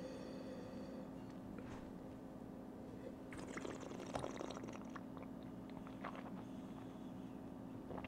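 Faint mouth sounds of wine being tasted: sipping and working the wine around the mouth, loudest from about three to five seconds in, over a steady low hum.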